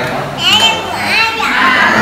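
Several people talking over one another, with children's high voices among them.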